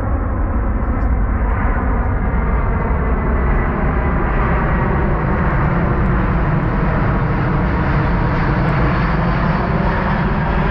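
Large four-engine military jet transport passing low overhead, its jet engines making loud, steady noise with a faint whine that slowly shifts in pitch. It is flying low on a touch-and-go practice circuit.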